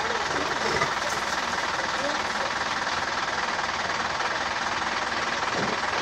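A vehicle engine running steadily, with people's voices faintly in it near the start and near the end.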